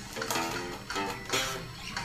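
Electric bass guitar, a few plucked notes played faintly, about one every half second.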